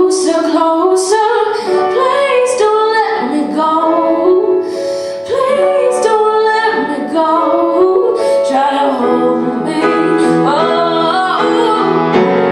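A woman singing with grand piano accompaniment.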